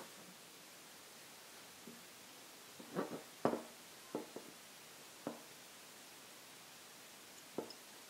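A handful of faint, short clicks and light taps from a black anodized aluminium camera L-bracket being handled and turned over in the hands, over quiet room tone.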